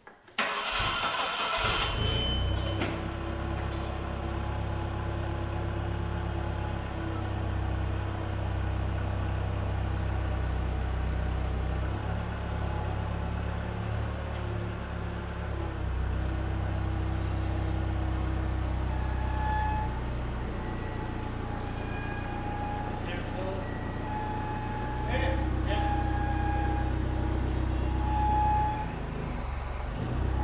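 Forklift engine starting about half a second in, then running steadily. A thin high whine comes and goes twice in the second half as the forklift works.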